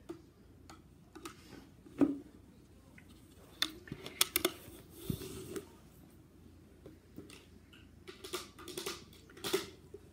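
Clicks and knocks of a clear plastic tennis-ball can with balls inside being nosed, pushed and handled on a carpet. The loudest knock comes about two seconds in, with clusters of clicks around four seconds and again near the end.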